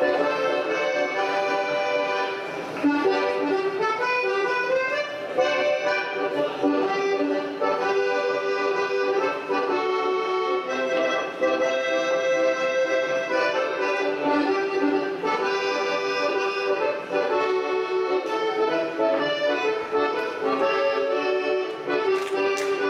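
Traditional folk dance music led by an accordion, a steady continuous melody.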